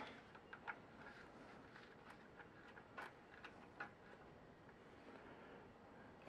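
Near silence, broken by a handful of faint, scattered clicks and taps from multimeter test probes being handled and touched to the battery bank terminals.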